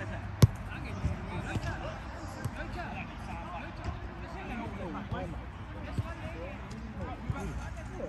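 Football being kicked: one sharp kick about half a second in, then several fainter kicks, under the distant shouts and calls of the players.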